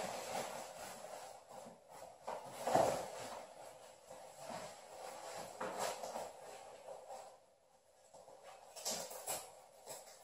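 Irregular rustling and rubbing of Revit Sand 2 textile motorcycle trousers as a hip protector is pushed into its tight pocket, with louder rubs about three seconds in and again near the end.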